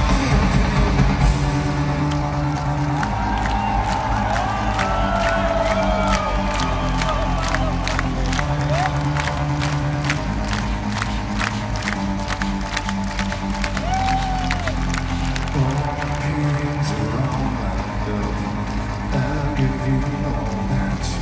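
Live industrial-rock band playing an instrumental stretch: a steady low synth and bass with a regular beat of about two strikes a second that drops out near the end, with crowd cheering and whistles over it.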